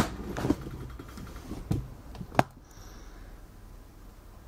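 Handling noise as the camera is moved and zoomed in close: a few light clicks and knocks, the sharpest about two and a half seconds in, with a brief faint whine just after, over a low hum.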